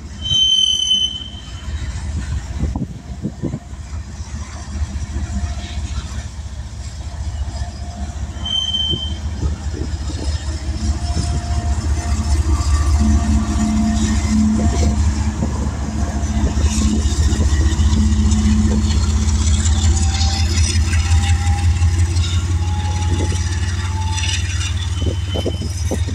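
Kansas City Southern freight train of covered hopper cars rolling past close by, with a steady low rumble of wheels on rail and two short high squeals early on. A diesel locomotive in the train goes by about halfway through, and its engine adds a louder low hum that is strongest shortly after it passes.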